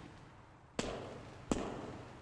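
Two sharp, loud bangs about 0.7 s apart, each followed by a long echoing decay, after the tail of a similar bang.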